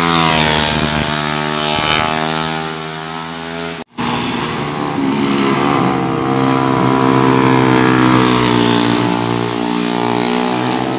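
Small motorcycle engines running hard through a curve. The first bike's note falls as it goes by. After a sudden dropout about four seconds in, several bikes approach with engine notes that rise and hold.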